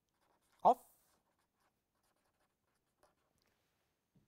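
A short spoken syllable about half a second in, then the faint scratching of a marker pen writing on paper.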